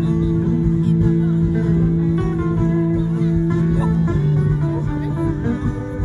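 Two acoustic guitars played live through a PA, an instrumental passage of a song with held chords that change about four seconds in.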